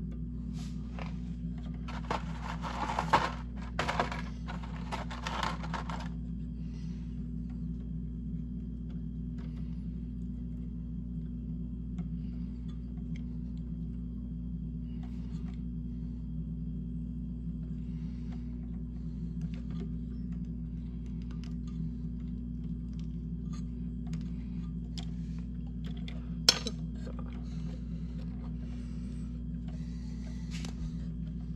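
Hands twisting a plastic wire nut onto a folded copper ground wire at a metal electrical box. There is scraping and rustling with small clicks for about four seconds starting two seconds in, then light ticks, and one sharp click near the end, all over a steady low hum.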